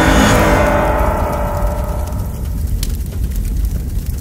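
Logo sting music: a loud cinematic impact hit at the start whose ringing tones fade away over two to three seconds, over a steady deep rumble.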